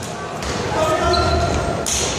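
A basketball bouncing on a hardwood gym floor, with players' voices in a large echoing hall.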